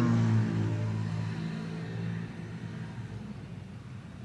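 Motor scooter engine passing close alongside the car, a steady hum loudest at first and fading away over two to three seconds, heard from inside the car.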